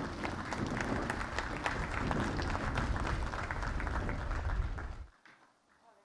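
An audience applauding, many hands clapping together, which cuts off suddenly about five seconds in.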